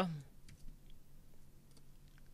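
A few faint, sharp clicks from a computer mouse and keyboard while text is selected and copied.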